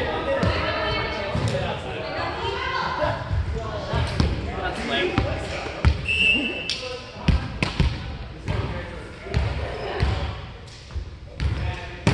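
Volleyball thumping as it is bounced on the hardwood gym floor and struck by hands, a run of sharp knocks with voices among them, and a brief high squeak about six seconds in.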